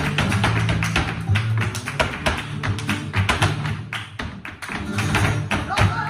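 Flamenco tarantos: a dancer's shoes striking the wooden stage in fast rhythmic footwork (zapateado), over flamenco guitar and hand-clapping (palmas). The strikes ease off briefly about two-thirds of the way through.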